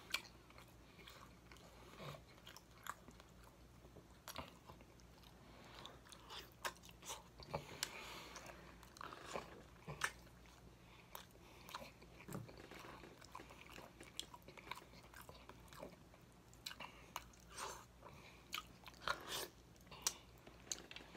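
Close-miked chewing of baked chicken, with frequent short wet smacks and clicks of the lips and mouth, and sucking sounds as sauce is licked off the fingers.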